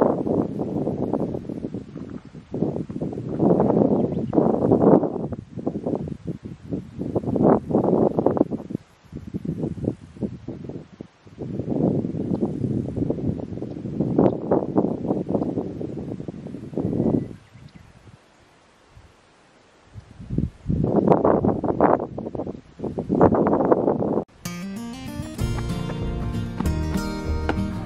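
Wind buffeting the microphone in irregular gusts, dropping away for a couple of seconds about two-thirds of the way through. Background music starts near the end.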